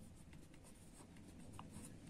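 Faint scratching of a felt-tip marker writing a few words on paper.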